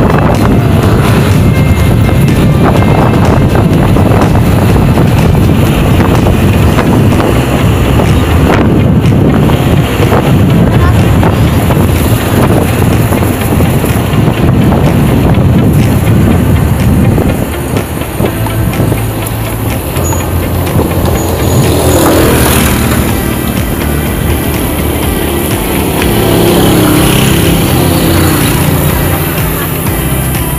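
Wind buffeting the microphone of a handlebar-mounted camera on a moving bicycle, a loud steady rumble, with road traffic alongside. It eases a little about halfway through.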